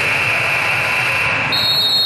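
Gym scoreboard horn sounding a steady high tone for under two seconds, overlapped near the end by a shorter, higher tone. The horn marks the end of a timeout as the countdown clock runs out.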